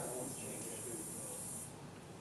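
Faint talking voices over a steady high-pitched hiss that cuts off suddenly near the end.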